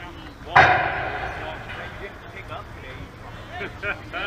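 A loud, sharp metallic clang about half a second in, ringing and dying away over about a second, with faint voices afterward.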